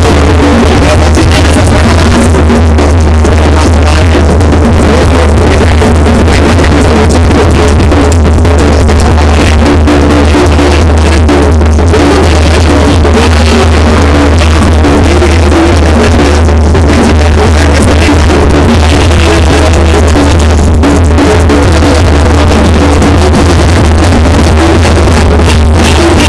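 A Mexican banda playing live, brass and bass drum together in a steady dance rhythm. The recording is overloaded and distorted, with a heavy, booming low bass throughout.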